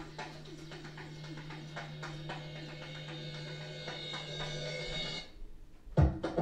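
A single low synthesizer note held steadily for about five seconds, with faint ticks about twice a second over it, then cut off suddenly.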